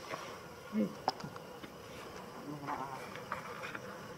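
A flying insect buzzing briefly close by, once just under a second in and again at about two and a half seconds, with a few light clicks over a faint outdoor background.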